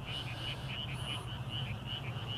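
A small night-calling animal chirps steadily and rhythmically, high-pitched, about four chirps a second. A low steady hum runs underneath.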